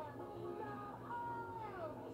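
A high singing voice holding long notes that each slide down at the end, over backing music, heard through a TV speaker.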